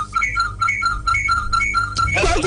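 Music: a quick, repeating figure of short high notes, about four or five a second, over a steady low hum.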